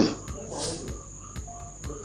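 Insects chirping in the background, a steady high-pitched trill, with no speech over it.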